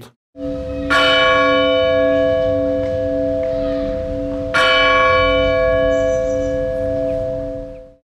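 A church bell struck twice, about a second in and again past the middle, each strike ringing out over a steady held hum, stopping abruptly near the end: the bell sting of a title interlude.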